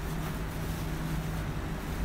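Steady low background hum with no speech, unchanging throughout.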